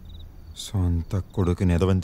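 Crickets chirping faintly in short repeated trills in a night ambience, then a man's voice cutting in loudly under a second in.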